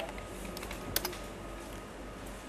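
A few computer keyboard keystrokes over a low steady hiss, with one sharper pair of clicks about a second in: a password being typed at a MySQL login prompt and entered.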